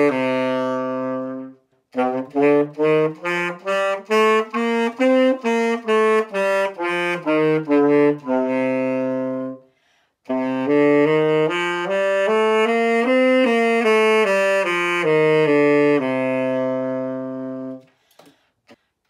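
Yamaha YTS-280 tenor saxophone practising scales. A held note ends, then a scale in short separate tongued notes, about two a second, rises and falls back to a long note; after a short pause the scale is played again with the notes joined smoothly, ending on a long held note.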